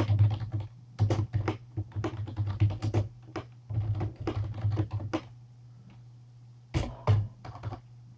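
Typing on a computer keyboard: quick runs of keystrokes for about five seconds, a pause of a second or so, then a few more keystrokes near the end.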